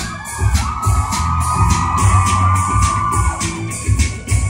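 Live band playing amplified music with a steady beat and heavy bass, while the crowd screams and cheers over it for about three seconds before the cheering dies back.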